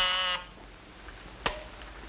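A 1950s office telephone or intercom buzzer gives one short, loud buzz, signalling a call for the secretary's desk. About one and a half seconds later there is a single sharp click, such as a receiver being lifted or an intercom key pressed.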